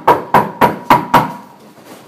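Fist knocking hard on a door: a rapid run of knocks, about four a second, that stops a little over a second in.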